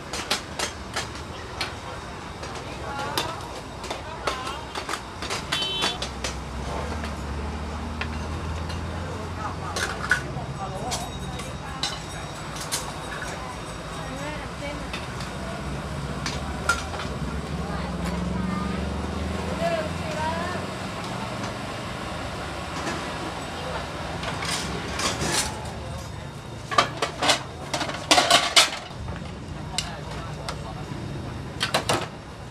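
Street-food stall clatter: metal pots, plates and utensils clinking and knocking against a steel counter, with a burst of sharp clinks near the end. The background has a crowd's chatter and a low steady rumble.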